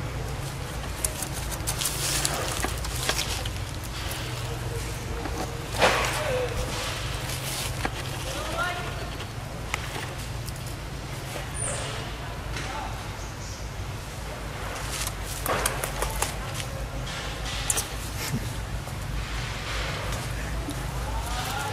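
Outdoor ambience of indistinct background voices, with dry leaf litter crackling and rustling in short clicks, a steady low hum, and two brief high chirps.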